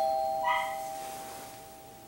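Two-note ding-dong doorbell chime, its two tones ringing on and slowly fading away.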